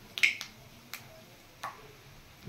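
Nigella seeds (kalo jeere) popping in hot oil in a wok: three sharp crackles, well spaced.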